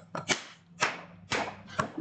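A man clapping his hands: four sharp claps about half a second apart.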